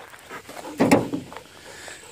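A dog breathing: one short, louder breath about a second in, among faint quieter sounds.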